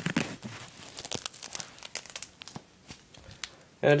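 Scattered crackling and rustling of a boxing hand wrap's cloth and velcro wrist strap being handled and wrapped around the wrist.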